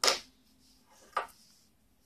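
Hands handling a small hard plastic carrying case: a brief scrape at the start, then a single light click about a second later.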